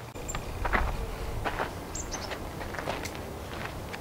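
A few scattered footsteps and light knocks on a hard outdoor surface, with a short high chirp about two seconds in.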